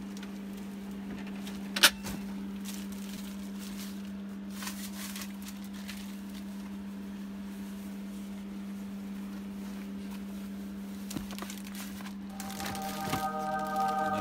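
A steady low hum with a sharp click about two seconds in and faint rustling of handled tool packaging. Near the end a choir-like religious sound effect swells in with sustained chords.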